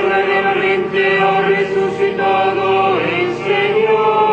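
Liturgical chant: the sung responsorial psalm of a Catholic Mass, voices holding long notes with slides in pitch between them.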